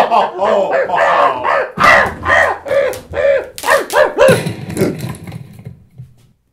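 A person's voice making rapid, high, wordless cries, several short outbursts a second, in a comic puppet scuffle; they trail off near the end.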